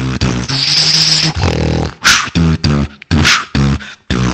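Solo beatboxing: a held bass note with a hissing high sound over it, then a beat of short pitched bass kicks cut by sharp snare hits about a second apart.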